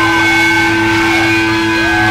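Amplified electric guitar holding a loud, droning distorted note with feedback, between songs of a live rock set. A fainter tone swoops up and down twice over the held drone.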